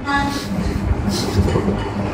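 A woman says a short 'ha', then the room noise goes on: a steady low rumble and hiss, with two brief hissing sounds.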